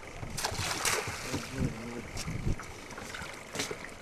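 Boat deck ambience with wind on the microphone, as a hoop-framed fishing net is thrown overboard: brief rushes of splash noise about half a second and a second in as it hits the water.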